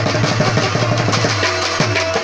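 Rubab and tabla playing a fast Pashto instrumental (naghma): rapid plucked rubab notes over quick tabla strokes, with the tabla's bass drum giving a deep, sustained boom.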